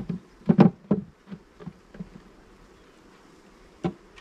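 Honeybees buzzing close to the microphone in short passes, loudest in the first second or so. A couple of knocks of hive equipment being handled, one at the start and one near the end.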